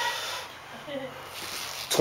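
A weightlifter's faint, breathy straining and a brief low vocal sound during the last rep of a heavy one-arm dumbbell row.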